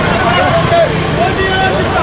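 Music from a street procession: a melody of rising and falling notes over the chatter of a marching crowd.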